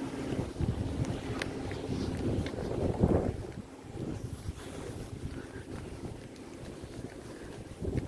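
Wind buffeting the microphone over the low rumble of a car rolling on asphalt, with a louder gust about three seconds in that then eases off.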